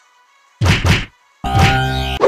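Added fight sound effects. A quick double whack of punches comes a little over half a second in, then another, longer hit about a second and a half in.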